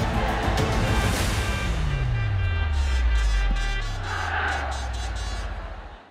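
Sports-broadcast outro theme music, with a low tone sweeping steadily down in pitch partway through. It fades out at the very end.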